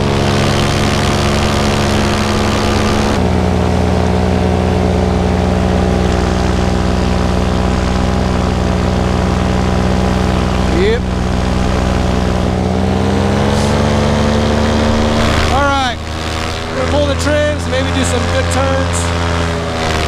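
Vittorazi Moster 185 single-cylinder two-stroke paramotor engine running steadily in flight, driving its propeller. Its pitch drops a step about three seconds in, climbs again around 13 seconds as the throttle opens, and the level dips briefly at about 16 seconds.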